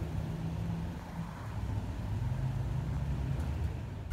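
Low rumble of a car engine and street traffic, with a hum whose pitch shifts slowly.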